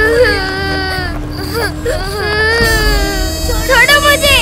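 A female voice crying and wailing in long, drawn-out cries that slide down in pitch, then short, sharp cries near the end, pleading to be let go. Underneath runs a steady background-music drone.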